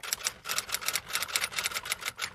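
Typewriter typing sound effect: a fast, steady run of keystroke clicks, several a second, accompanying text being typed out on screen.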